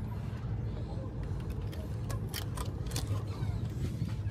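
Steady low hum from inside a passenger ferry, with faint background voices and a few light clicks about two seconds in.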